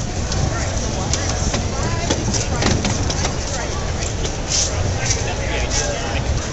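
A steady low rumble from a ride-on Dalek rolling along, with scattered light knocks, under a crowd's chatter.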